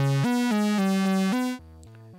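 Doepfer A-100 analog modular synthesizer playing a run of short, bright notes that step between pitches, panned a little left of centre, at about 11 o'clock, by the A174 joystick sitting in its upper-left position. About one and a half seconds in the notes drop sharply in level and carry on quieter.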